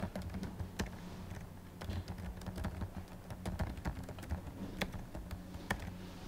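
Computer keyboard being typed on: irregular, quick key clicks, over a faint steady hum.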